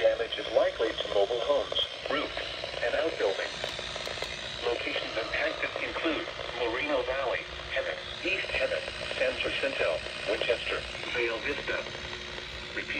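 Several NOAA weather radios reading out a severe thunderstorm warning in an automated voice, the broadcasts overlapping with no pauses. The sound comes through the radios' small speakers.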